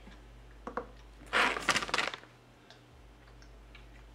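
A light click, then a little over a second in a short burst of plastic packaging crinkling as the cookie pouch is handled and turned.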